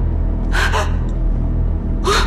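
A woman's frightened gasp, one short sharp breath about half a second in, over a low, tense musical drone.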